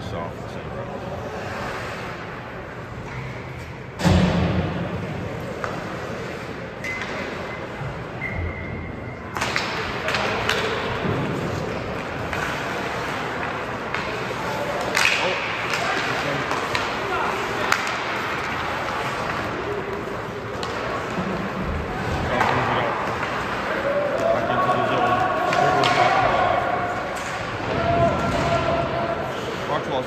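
Live ice hockey play in an arena: a loud knock about four seconds in, then continuous noise of skates and sticks on the ice with scattered clicks of stick on puck, and voices calling out.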